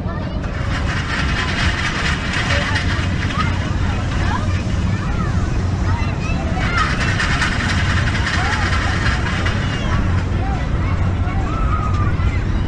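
Outdoor fairground ambience: scattered distant voices over a steady low rumble, with two stretches where a brighter rushing noise swells up.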